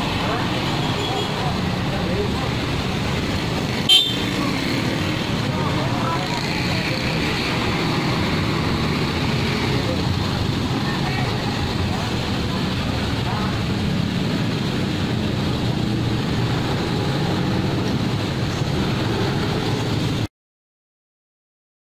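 Light cargo truck's engine running as it drives slowly along a busy street, with steady traffic noise around it. A single sharp click about four seconds in.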